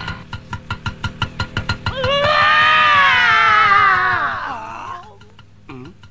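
Film background score or sound effect: a fast run of percussive strikes, about seven a second, then a long, loud, wavering wail that slides down in pitch and fades out about five seconds in.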